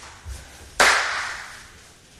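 A single loud, sharp hand smack about a second in, dying away over about a second in a large, echoing room.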